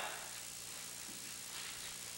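Room tone: a steady hiss with a faint low hum, and no distinct sound event.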